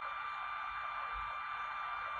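Tronxy X5SA printhead cooling fan running at full power, a steady hiss with a thin, unchanging high whine. The fan is blowing on the hotend and cooling the heater block, so the hotend cannot hold its temperature.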